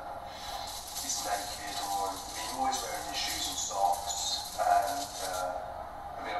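Indistinct speaking voices with music faintly underneath, as on an edited soundtrack. A hiss of noise runs behind them from about half a second in until near the end.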